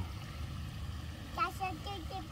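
Shallow creek water running faintly over pebbles, a steady low background, with a few short faint voice sounds in the second half.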